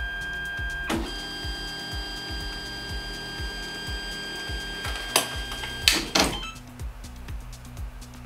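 Ender 3 Pro 3D printer's stepper motors whining steadily as the printer homes its axes. The whine breaks briefly with a click about a second in and cuts off with a few sharp clicks near six seconds, when the homing goes wrong and the power is switched off. A lower steady hum is left after that.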